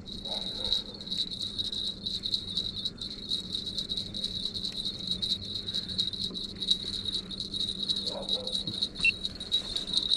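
Low-profile baitcasting reel with a line counter being cranked steadily while a fish is played: a continuous high whirring crowded with fast ticking. A faint low steady hum from the boat's outboard motor lies underneath.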